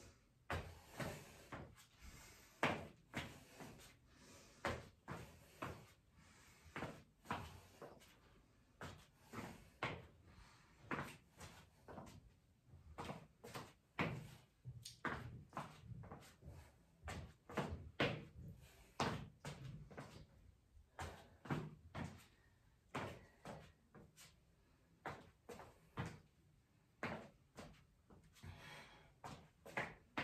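Footfalls of sandalled feet on a rubber gym floor during a quick stepping-and-kicking cardio exercise: light thuds about twice a second in an uneven rhythm.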